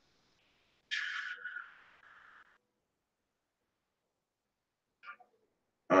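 Near-quiet room tone, broken about a second in by one brief soft hiss that fades within a second or so.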